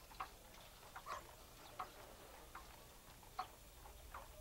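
Faint, slow, even ticking in a quiet room, about one short tick every 0.8 seconds, like a clock.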